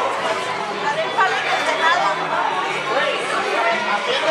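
Several people talking at once: indistinct overlapping chatter of a small crowd.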